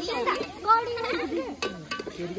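Children's voices talking and chattering close by, with a couple of short light clicks near the end.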